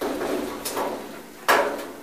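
Metal scraping and sliding as the lower front of a cabinet wood stove is worked by hand, then a sharp metal clank about a second and a half in.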